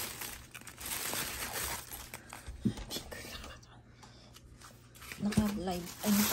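Thin plastic carrier bag rustling and crinkling as takeout food containers are pulled out of it, loudest in the first couple of seconds. A short voice comes in near the end.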